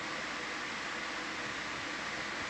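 Steady, even background hiss with no separate events.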